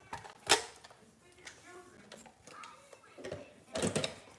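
One sharp click about half a second in, then a cluster of plastic knocks near the end as the lid is set onto a blender jar. Faint voices can be heard in between.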